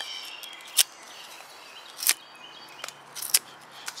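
Helle Temagami knife shaving curls off a wooden stick: a few short, crisp cutting strokes, about one a second, as the blade digs into the wood.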